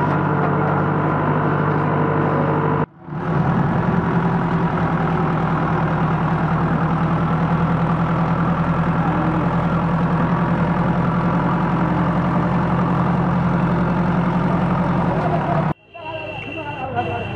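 A JCB backhoe loader's diesel engine running steadily as the machine works. The sound breaks off briefly about three seconds in and again near the end.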